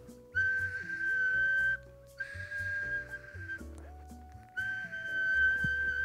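A 3D-printed resin whistle blown in three blasts, each a steady high-pitched tone, the third held longest and still sounding at the end.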